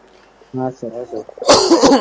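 A few short voiced sounds, then one loud, harsh cough near the end.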